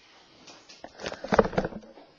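A few faint clicks, then a short murmur from a person's voice about a second in.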